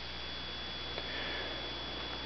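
Steady low hiss of background ambience with a faint, constant high-pitched whine and one light tick about a second in.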